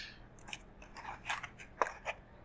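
Light clicks, ticks and rustles of tennis rackets and a plastic string reel being handled on a table. The sharpest tick comes near the end.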